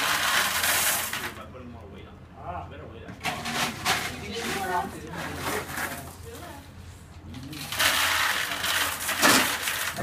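Low, indistinct talking from people in the room, broken by two louder bursts of hissing noise: one at the start, lasting about a second and a half, and one about eight seconds in, lasting about two seconds.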